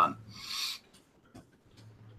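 A man's short breathy exhale about half a second in, followed by quiet room tone with a few faint ticks.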